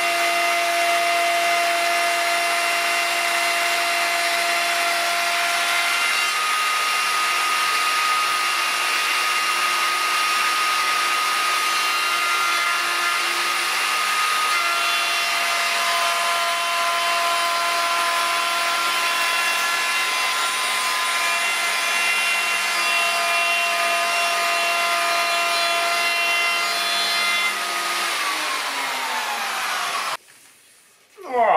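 Erbauer electric router fitted with a 12.7 mm Trend round-over bit, running at full speed as it cuts a rounded edge along a southern yellow pine shelf: a steady motor whine over the cutting noise. Near the end it is switched off and winds down, its pitch falling.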